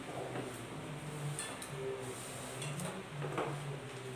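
A few light clicks and knocks of objects being handled on a table, over a faint steady room background.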